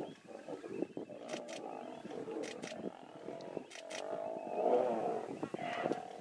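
Male lions growling and snarling in a fight. The growls swell from about four to five and a half seconds in, and a few sharp clicks sound earlier.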